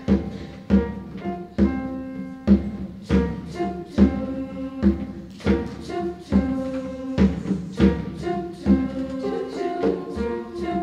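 Grand piano playing the introduction to a choral piece: a steady pulse of chords struck a little over once a second, each ringing and fading before the next.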